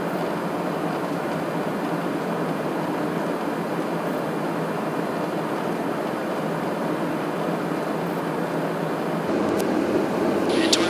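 Steady in-flight noise inside a KC-135R Stratotanker's boom operator area, a constant rush of airflow and engine noise. Near the end it shifts a little louder and brighter.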